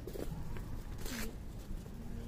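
Low background hum of a quiet city street at night, with one brief rustling swish close to the microphone about a second in.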